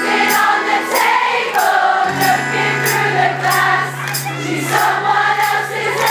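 Live pop-rock band playing, with a steady drum beat about twice a second and a held bass note from about two seconds in, under many voices singing together as the crowd joins in. The sound is a poor-quality audience recording.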